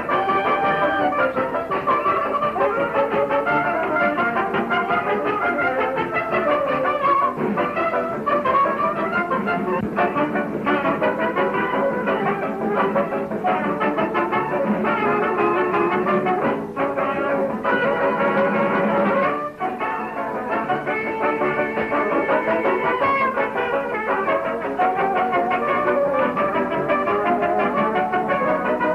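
Dance orchestra music led by brass, trumpets and trombones, playing a lively number, with the thin, treble-less sound of a 1929 sound-film recording. The music briefly dips twice past the middle.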